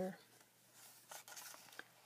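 Faint rustling and light taps of card and paper journal pages being handled and shifted by hand.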